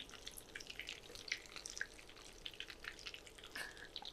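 Batter-coated pointed gourds deep-frying in hot oil: faint, irregular crackling and popping from the bubbling oil.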